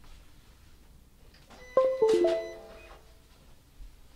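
Short electronic chime of a few quick notes, about two seconds in, as the Silhouette Cameo cutting machine is switched on and connects to the computer.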